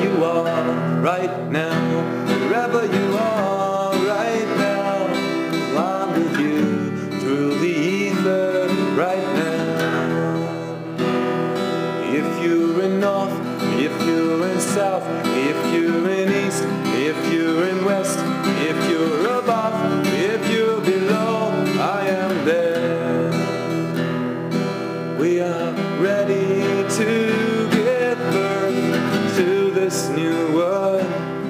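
Acoustic guitar played without a break, with a gliding sung melody over it.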